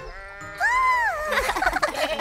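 Cartoon goat bleat sound effect. The call rises and falls about half a second in, then breaks into a quavering bleat, over light background music.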